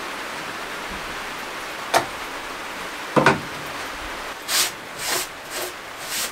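Cloth wiping the bare painted metal floor of a van: four short swishing strokes in the last couple of seconds, after a click and a knock. A steady hiss of rain runs underneath.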